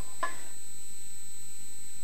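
Steady hiss of studio room tone with a faint, steady high-pitched whine; no distinct sound event.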